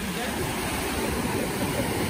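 Small sea waves breaking and washing up the beach: a steady, even rush of surf.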